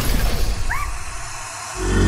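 Cartoon explosion sound effect dying away as a fading noisy hiss, with two short squeaky chirps about three-quarters of a second in. Music comes in near the end.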